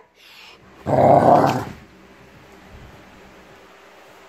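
A Rottweiler gives one loud, rough play growl lasting under a second, about a second in, while mouthing a Nerf sword.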